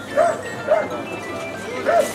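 A Belgian Malinois gives three short, high yips while heeling, over background lounge music.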